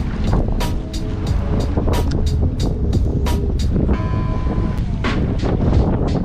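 Background music with a steady, quick beat over a continuous low rumble from wind and the boat on the water.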